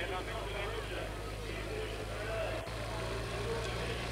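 Steady vehicle engine noise from the race convoy under the picture of a rider on the road, with a constant low hum and hiss from the old videotape recording. A single short click sounds just past halfway.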